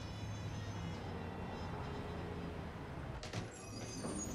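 Steady background noise with a low hum, and faint music underneath.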